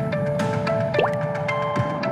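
Electronic intro music with watery drip sound effects and a quick rising pitch glide about a second in.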